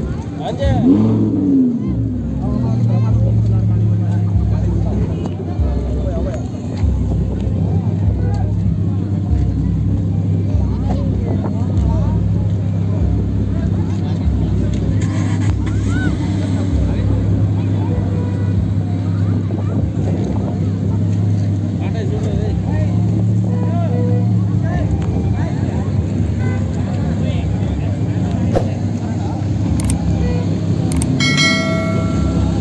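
Lamborghini Huracán's 5.2-litre V10 blipped once about a second in, the pitch rising and falling, then idling steadily, with people talking around it.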